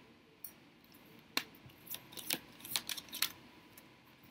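Large oracle cards being handled on a table: a few sharp clicks and taps of stiff card stock against the deck, with soft sliding between them.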